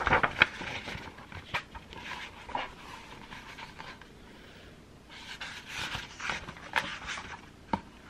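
Close-miked handling of a picture book: paper pages rustling, with sharp clicks and taps at the start and a run of soft breathy noises in the second half.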